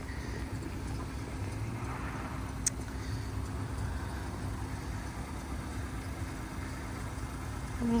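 Steady low rumble and hum of an idling car engine, with a single sharp click about two and a half seconds in.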